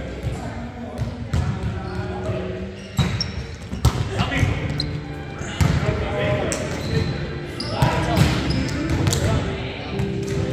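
A volleyball being struck and bouncing on a hardwood gym floor: a string of sharp smacks and bounces that ring in the large hall, over players' voices.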